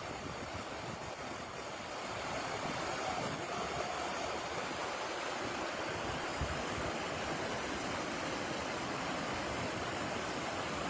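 Steady rushing of water, as of runoff flowing down a muddy dirt road.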